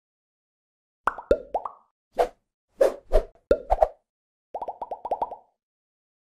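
Cartoon-style plop sound effects: a string of short pops, several with a quick upward flick in pitch, starting about a second in, then a fast run of small rising bloops near the end.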